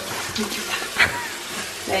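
Kitchen mixer tap running steadily into a metal sink, with a hand held under the stream.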